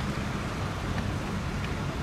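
Steady background noise with a low rumble and a few faint ticks, typical of wind on an outdoor microphone.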